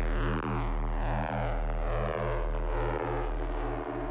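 Electronic music: a sustained buzzing synth bass drone that pulses about once a second, its upper tones slowly sliding downward, with no drums.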